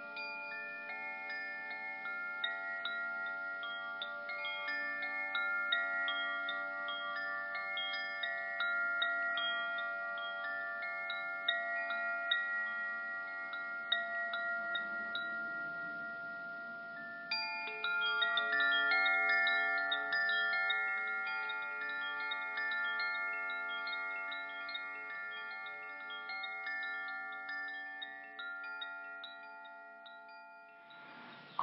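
Wind chimes ringing: many metallic notes struck irregularly and overlapping as they ring on, with a louder flurry of strikes a little past halfway that slowly dies away.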